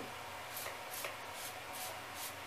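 Finger-pump mist sprayer of leave-in conditioner spritzing onto hair in quick, evenly spaced hisses, about two a second.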